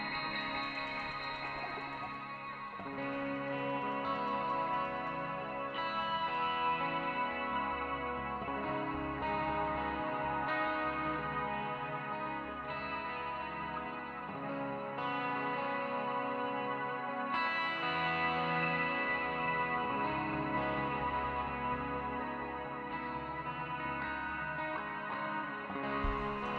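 Live instrumental rock: a Gibson Les Paul electric guitar playing long, ringing notes over electric bass guitar.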